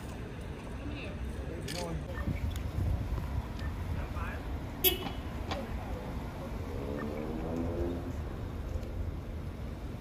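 Night-time city street ambience: a steady low rumble of idling vehicles with faint, distant voices. A single sharp click comes about halfway through, and a short pitched sound, much like a car horn toot, comes a little later.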